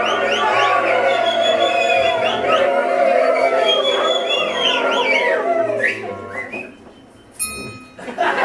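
A male voice choir holding sustained notes, with high whistled glides over the top, dying away about six seconds in. A brief high pitched tone sounds near the end.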